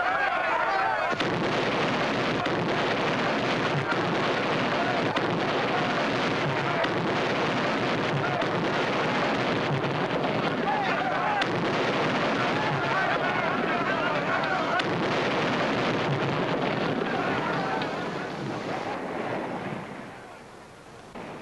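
Battle din on an old film soundtrack: many men shouting at once over a dense wash of explosions and scattered gunshots, dying away near the end.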